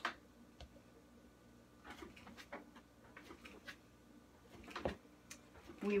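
Faint soft thuds and scuffs of a lump of clay being pressed and rocked by hand on a wedging table, ram's head wedging. A handful of short strokes, the loudest near the end.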